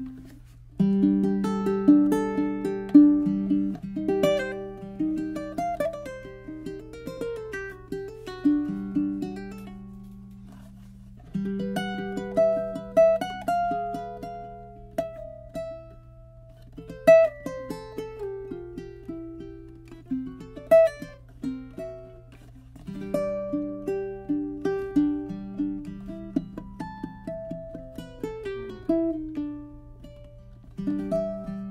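Kala ukulele with a torrefied spruce top, played solo and fingerpicked: melodic runs over ringing chords and held low notes, in phrases with short pauses. The notes sustain and carry a lot of overtones.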